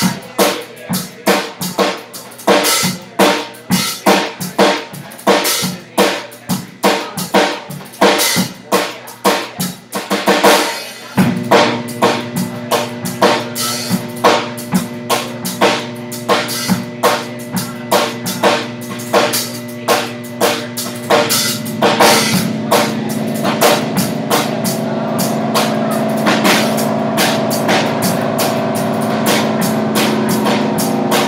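Live free-improv band: a drum kit playing busy, rhythmic hits with bass drum and snare. About a third of the way in, a low held drone note joins; about two-thirds in it changes to a higher held note and the drums sit further back.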